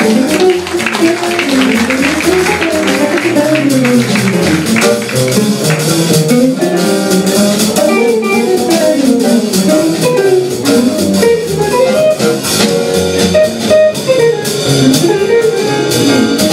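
Live jazz quintet. A hollow-body archtop guitar plays fast runs that climb and fall, over double bass and a drum kit with cymbals keeping time.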